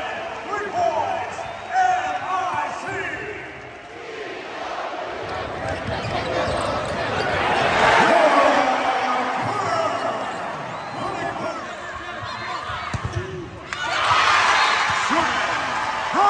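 Basketball game sound in a large arena: a ball dribbling on the hardwood against crowd noise. The crowd swells to a cheer about halfway through. Near the end it cuts abruptly to another loud crowd cheering.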